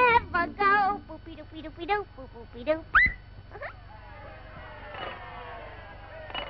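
Early-1930s cartoon soundtrack: a wavering, voice-like sound and a short 'uh-huh', then a quick rising whistle-like glide about three seconds in and a second one soon after. Several overlapping tones slide downward near the end.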